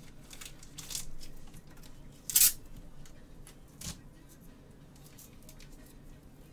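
Handling noises of hard plastic trading-card holders: a few light clicks and one short, louder scraping rustle about two and a half seconds in.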